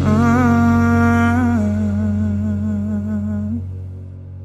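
Closing wordless vocal of a pop love song: one long hummed or sung note with vibrato over soft backing, stepping down to a lower note partway through and fading out near the end.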